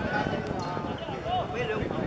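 Football players shouting to each other during play, with the thud of the ball being kicked and a few other short knocks.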